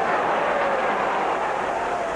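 Steady noise of a football crowd in the stands.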